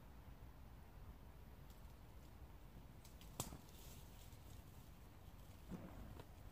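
Near silence: a faint low background with one sharp click about three and a half seconds in and a few faint crackles.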